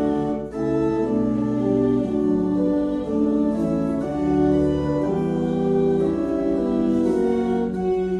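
Organ playing a hymn in sustained chords that change every second or so.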